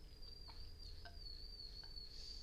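Quiet room tone with a faint, steady high-pitched whine that wavers slightly in pitch, over a low hum, with a few soft clicks.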